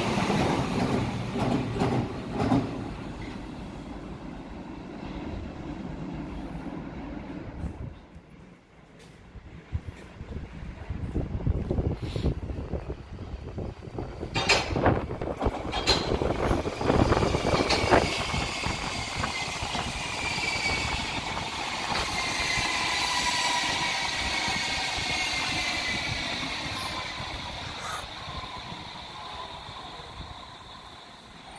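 A Berlin U-Bahn train runs past close by and fades away. Then a Berlin U-Bahn IK-series train approaches and brakes into the station, with sharp wheel clacks over rail joints. Its drive whine, several pitched tones together, glides steadily down in pitch as it slows over the last ten seconds.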